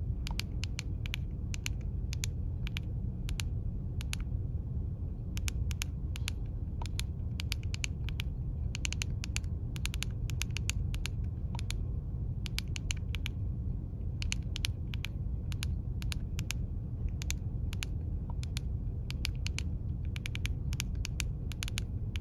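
Key presses on a Baofeng UV-5R handheld radio's rubber keypad: many short clicks in quick, irregular runs as a frequency is keyed in and saved to a memory channel. A steady low rumble runs underneath.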